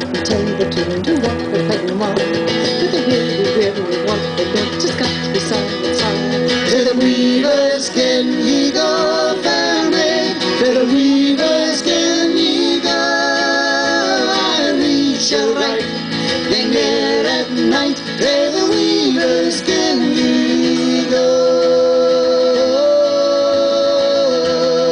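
Live folk band playing a Scottish tune: a piano accordion carrying a wavering, sustained melody over strummed acoustic guitars and a drum kit.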